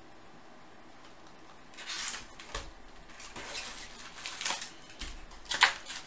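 Foil-wrapped baseball card packs crinkling and rustling as they are handled, in irregular bursts that start about two seconds in and get louder toward the end.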